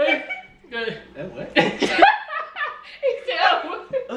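Several people laughing, mixed with bits of indistinct talk.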